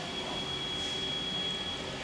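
Steady machine-shop background noise with a faint, high, steady whine running through it.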